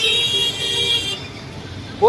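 A vehicle horn sounding one steady note for about a second, then cutting off, over low traffic rumble.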